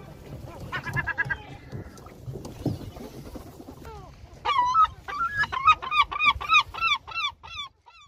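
A large bird calling: a few softer calls about a second in, then a rapid run of about a dozen loud, hooked calls at roughly three a second, growing fainter near the end.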